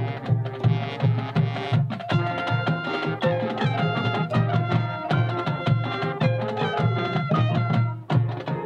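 High school marching band playing its field show: wind instruments holding chords over a steady, pulsing drum beat.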